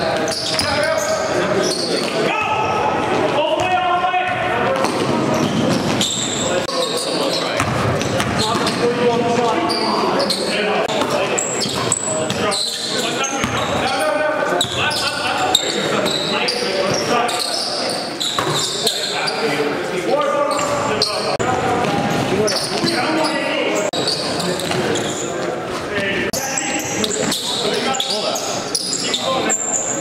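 Game sound of indoor basketball: a ball bouncing on the court floor amid indistinct, echoing players' voices in a large gym.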